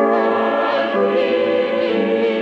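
Youth choir singing a choral benediction in held, sustained chords, moving to a new chord at the start and again about a second in.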